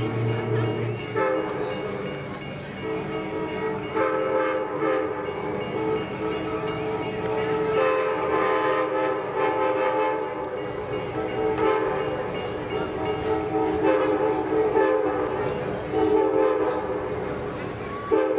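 Approaching Amtrak passenger train's locomotive horn sounding a series of long blasts with short breaks between them, a chord of several tones held steady.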